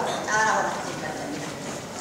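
A short spoken word, then handling noise: sheets of paper being leafed through, with light knocks on a handheld microphone.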